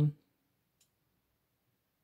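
Near silence after the last word of speech ends, with one faint click a little under a second in.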